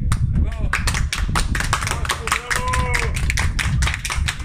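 A small group clapping: scattered, irregular hand claps that run through the whole stretch, with a voice briefly heard under them midway.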